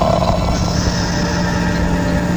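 Steady low drone of a few held tones over hiss, as heard through an AM radio broadcast.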